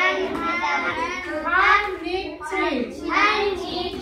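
Children's voices speaking a phrase together in a sing-song chorus, as in a classroom recitation.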